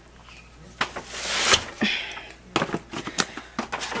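A grocery bag rustling as items are packed back into it, with a longer rustle about a second in and a shorter one near two seconds. A few light knocks follow as packages are handled and set down.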